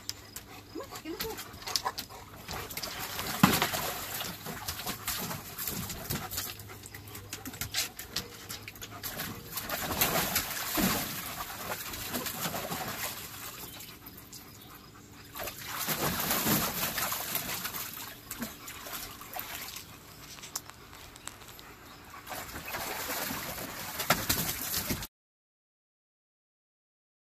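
Water splashing and sloshing in a plastic kiddie pool as a German Shepherd moves about in it, with two louder spells of splashing; the sound cuts off suddenly near the end.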